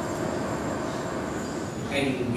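Steady background noise with no speech, even and unchanging.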